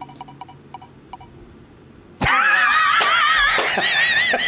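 An online prize wheel ticking as it spins, the quick clicks spacing out and stopping about a second in. About halfway through, a loud, high-pitched wavering voice takes over.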